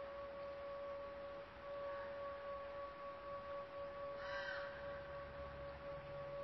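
A faint steady drone holding two pitches, an octave apart, from the film's closing soundtrack. About four seconds in, a single short bird caw sounds over it.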